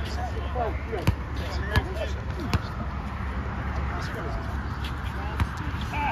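A basketball bouncing on an outdoor hard court: three dribbles in the first half, under a second apart, and one more near the end, over distant voices.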